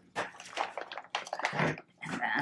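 Rustling and handling of a folded nylon softbox: several short irregular scuffs and rustles with a few light knocks, the loudest cluster about a second and a half in.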